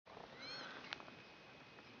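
American pika giving one short squeaky call about half a second in, a brief arched note that rises at its start. A sharp click follows just before the one-second mark.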